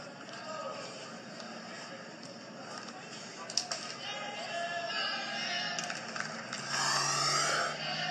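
Television broadcast audio heard through the set's speaker: faint voices mixed with music, with a sharp click a little past the middle and a louder, fuller stretch near the end.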